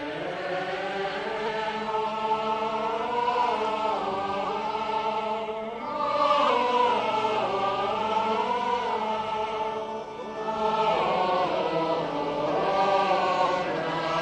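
A choir singing liturgical chant in long, slowly moving phrases, with short breaks between phrases about six and ten seconds in.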